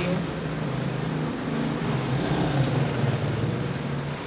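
A steady, low mechanical hum from a running motor or machine, with a few sustained low tones over a background rush.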